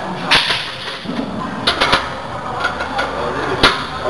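A few sharp clicks and knocks over a steady background hiss, with a short hissy burst about a third of a second in and the loudest, a single sharp knock, near the end.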